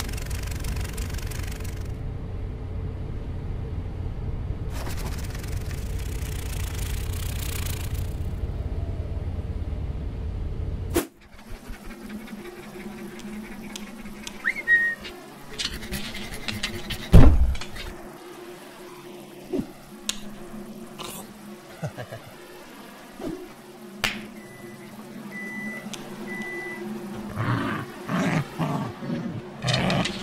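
Low road rumble of a car cabin with two spells of rushing wind hiss, cutting off abruptly about a third of the way through. Then a quieter room with a steady low hum and scattered cartoon sound effects: a loud thud a little past halfway and a few short beeps later on.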